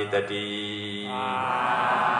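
A Buddhist monk chanting Pali verses through a microphone in a drawn-out monotone, holding one low note for about the first second. After that the sound becomes a fuller blend of many voices chanting together.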